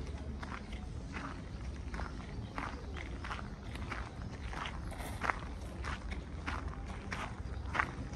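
Walking footsteps crunching on a gravel path, a steady stride of about three steps a second, over a low steady rumble.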